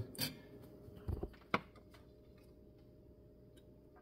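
A few brief knocks in the first second and a sharp click about a second and a half in, then quiet room tone.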